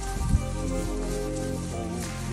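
Background music with soft sustained chords. About a third of a second in there is one short low thud.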